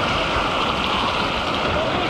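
Steady rush of moving water in a water-park lazy river, heard close to the water's surface.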